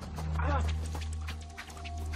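Film soundtrack: a low, steady music drone under a rush of rapid fluttering and swishing, like a storm of flying leaves or wings. About half a second in comes a short cry that rises and falls in pitch.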